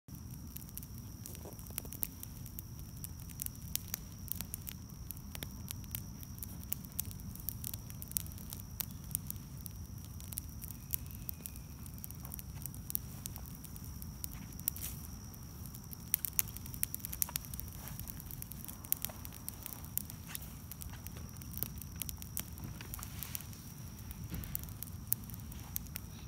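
Small open fire of leaves and green plant matter burning in a stone fire pit, crackling with irregular sharp snaps and pops.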